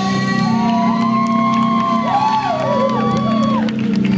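Live rock band playing loud, with an electric guitar holding long notes that bend up and down over a sustained low chord, and some crowd cheering.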